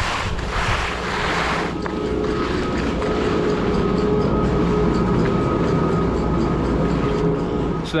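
Skis sliding on wet snow for the first couple of seconds, then the steady hum and whine of a chairlift's drive machinery and bullwheel at the loading station, holding on as the chair carries the skier away.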